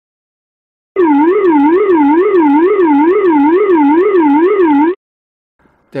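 ATR pitch trim whooler aural alert from the cockpit warning system: a warbling tone that rises and falls about two and a half times a second, starting about a second in and lasting about four seconds. It signals that the pitch trim has been running for more than one second.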